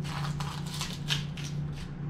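Boning knife slicing through the outer membrane of an elk hindquarter as it is lifted off the meat: a quick series of short cutting and tearing strokes, about four a second, over a steady low hum.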